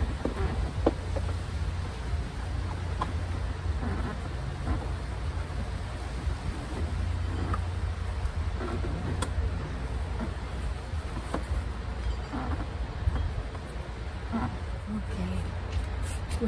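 Car seat harness straps and buckle being handled inside a car, with a few faint clicks, over a steady low outdoor rumble.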